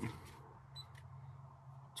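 A short, faint high beep from a handheld grain moisture meter, then a light click, about a second in, over a low steady hum.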